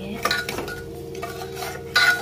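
A metal ladle stirring thick cooked dal in a pressure cooker pot, with a clink about a third of a second in and a louder clink against the pot near the end. A steady hum runs underneath.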